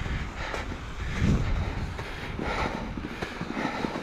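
Low, steady rumble of wind buffeting the camera's microphone as an electric mountain bike is ridden slowly through deep, soft snow.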